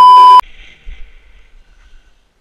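Loud, steady test-tone beep of the kind that goes with TV colour bars, cutting off suddenly about half a second in.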